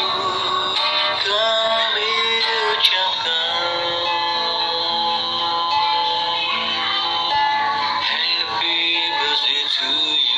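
A man singing a slow song, holding long notes that waver and glide between pitches, with guitar accompaniment.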